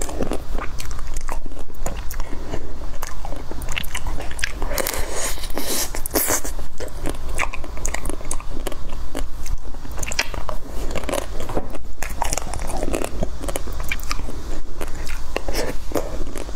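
Close-miked biting and chewing of chocolate-coated bites with a creamy white filling: the chocolate shell crunches and crackles in quick, irregular snaps, over soft wet chewing.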